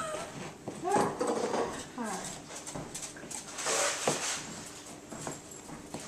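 A metal spoon scraping and clinking against the inside of a glass measuring cup as melted butter is worked out of it. There are a few sharp clinks, and a few short wavering voice-like whines near the start.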